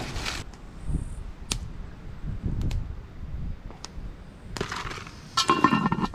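Cast iron camp oven lid being set on the pot, clanking and clinking metal on metal with its wire bail handle, with a ringing tone, about four and a half seconds in, after a few small scattered clicks.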